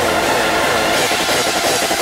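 Loud music from a festival sound system picked up on the camera's microphone, turned into a dense, even wash of noise with a faint fast pulse underneath.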